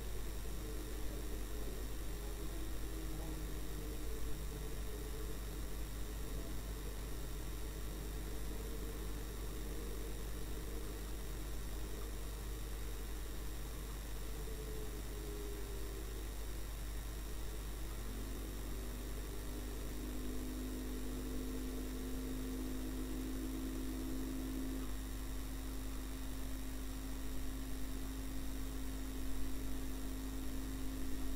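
Low, steady drone of a car's engine and road noise as picked up by a dashcam inside the cabin, with a faint hiss; the engine tone shifts pitch a couple of times around the middle as the speed changes.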